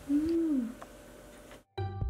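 A woman's short hummed 'mmm', rising and then falling in pitch over about half a second. After a brief silence, a chiming music jingle starts near the end.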